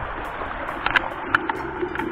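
Steady rush of a mountain stream's flowing water, with a few short sharp taps about a second in.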